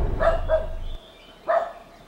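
Three short, sharp barking calls from an animal: two in quick succession near the start and a third about a second and a half in, heard over the tail end of bass-heavy music as it cuts out.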